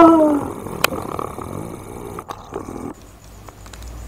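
A man's loud, rising cry right at the start, then a rough low noise with a couple of clicks until about three seconds in. It is the vocal outburst of a medium going into trance.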